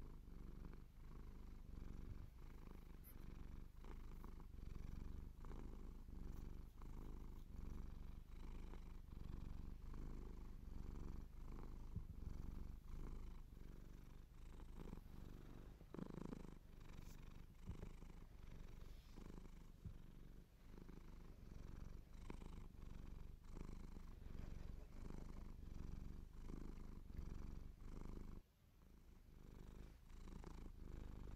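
Domestic cat purring close to the microphone, a continuous low rumble that pulses in an even in-and-out rhythm, with a brief drop near the end.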